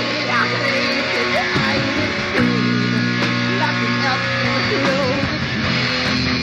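Live heavy metal band playing: distorted electric guitar holding chords over drums and cymbals, with lead notes bending up and down in pitch.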